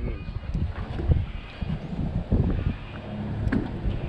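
Wind buffeting the microphone: an irregular low rumble, with a few faint clicks.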